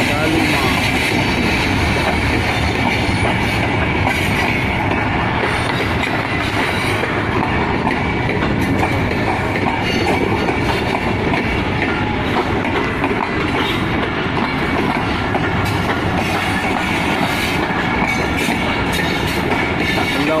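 Pakistan Railways Shalimar Express passenger coaches rolling past on the track, a steady rumble with the clickety-clack of wheels over the rails.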